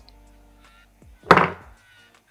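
A single thunk a little past halfway, a hard knock with a short ringing decay, over faint background music.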